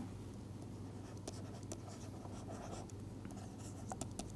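Faint, short scratching strokes of a stylus writing on a tablet screen, over a low steady hum.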